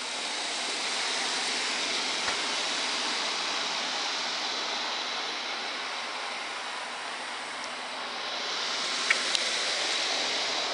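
Outdoor air-conditioning condenser unit running, a steady whooshing fan noise that is louder at the start and again near the end and a little quieter in between. A couple of faint clicks sound near the end.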